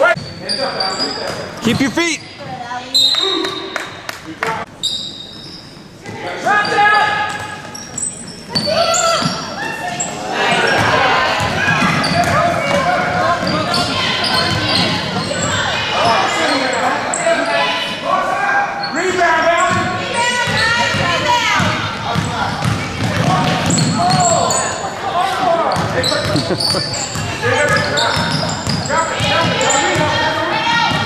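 Basketball game in a gym: the ball bouncing on the hardwood court, with many voices of spectators and players calling out, thickening into steady crowd noise after about ten seconds, all echoing in the large hall.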